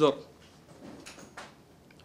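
A man's spoken phrase ends at the very start, then a pause in speech with faint room noise and two soft clicks about a second in, picked up by close-set microphones.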